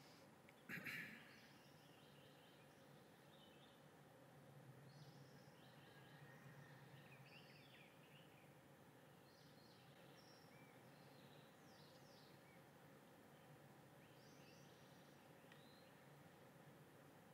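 Near silence with faint garden ambience: scattered soft bird chirps over a low steady hum. A brief soft knock about a second in is the loudest sound.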